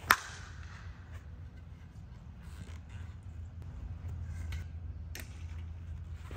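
One-piece composite senior slowpitch softball bat striking a softball once right at the start, a sharp crack. A faint click follows about five seconds in, over a steady low rumble.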